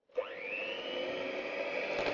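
Electric hand mixer switched on, its beaters in a bowl of creamed egg, sugar and butter: the motor's whine rises in pitch as it spins up over about the first second, then runs steadily.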